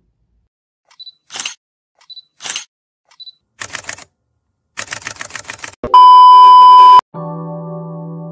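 Camera shutter sound effects: three separate shutter clicks in the first few seconds, then a rapid burst of clicks. A loud steady beep tone follows for about a second, the loudest sound, cut off sharply, and then a held electronic keyboard chord begins.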